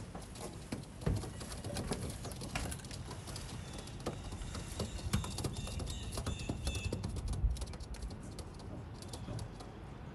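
Young racing homing pigeons cooing, with many scattered sharp clicks and taps. Faint high chirping runs through the middle.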